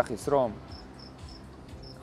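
Crickets chirping: short chirps at one high pitch, a few a second, faint in the background.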